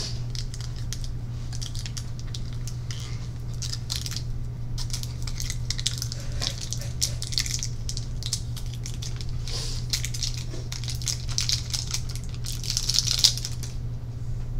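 Scattered scratching and rustling close to the microphone, busiest in the second half, over a steady low hum, with one sharper click near the end.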